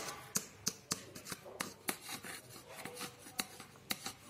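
A thin plastic paint cup being gripped and handled in the hands, giving a string of irregular sharp clicks and crinkles, about two or three a second.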